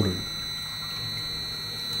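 Desktop screw extruder running under its variable-frequency drive: a steady low hum with thin, steady high-pitched whine tones from the drive motor.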